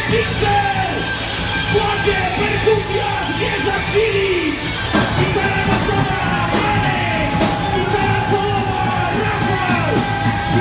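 Live rock band playing at full volume: distorted electric guitars, bass and drums, with a singer yelling the vocals. In the second half a long note is held over cymbal hits that come about once a second.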